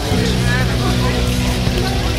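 A group of people talking as they walk, over a loud steady low drone that changes pitch in steps.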